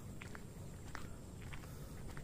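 Faint footsteps of a person walking along a paved road, a few soft irregular steps over a low background rumble.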